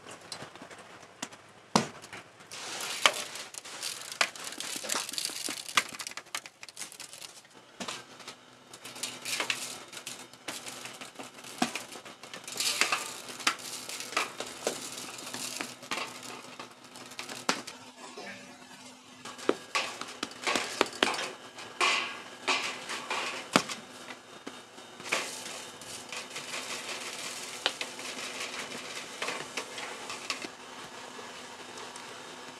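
Handling of thin aluminium foil pie tins and bakery utensils: irregular crinkles, light clicks and knocks. A faint steady hum sits under it for part of the time.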